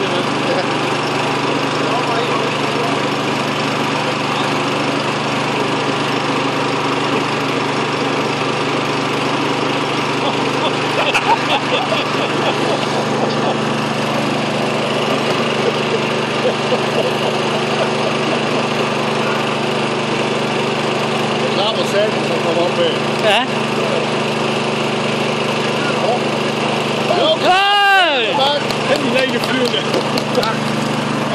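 A steady engine drone runs throughout, with voices faintly underneath. Near the end comes a short, louder sound that bends up and down in pitch.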